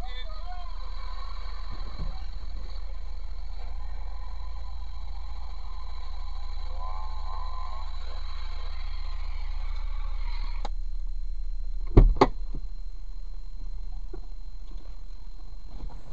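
Steady low hum inside a parked vehicle's cabin with a faint radio playing, then, about twelve seconds in, two sharp knocks in quick succession as another car bumps into the rear of the vehicle.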